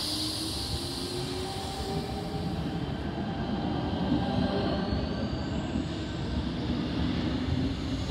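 Double-deck electric suburban train moving close past the platform: a steady rumble of wheels on the rails, with a faint electric motor whine that rises slowly in pitch as it gathers speed.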